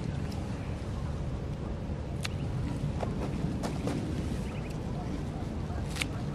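Steady low wind rumble on the microphone, with a few sharp snips of scissors cutting green onion tops, about two seconds in and again around three to four seconds in.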